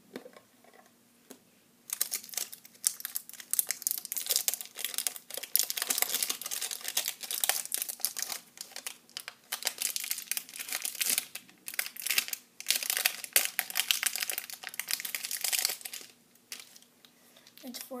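Crinkly packaging being handled and opened in a dense run of crackles, starting about two seconds in and stopping about two seconds before the end, as small batteries are unpacked for their charger.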